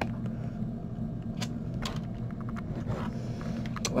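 Steady low background hum with a handful of faint, short taps: a fingertip tapping a tablet's touchscreen.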